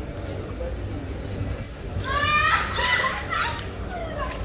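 Street ambience with a steady low hum. About halfway through, a quick run of shrill, high-pitched rising squeals is followed by a longer shrill cry, lasting about a second and a half; these are the loudest sound.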